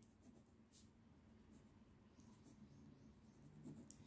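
Faint scratching of a pen writing words on paper, a few short strokes early and more in the second half.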